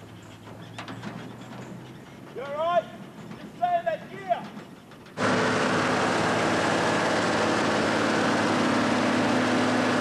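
A few short shouted exclamations over quiet outdoor background, rising and falling in pitch. About five seconds in, a sudden cut to loud, steady road noise: a vehicle moving fast on a dirt road, with tyre and wind rush over a low engine hum.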